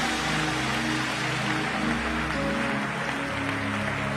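Live worship music with long held chords, over the steady noise of a large congregation celebrating in a hall.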